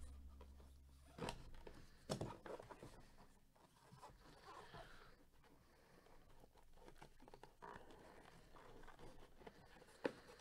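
Gloved hands handling and opening a cardboard trading-card box. Two light knocks come about a second and two seconds in, followed by faint cardboard rustling and scraping.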